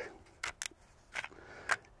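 A Glock pistol being field-stripped: a few short metallic clicks and slides as the slide is drawn forward off the frame.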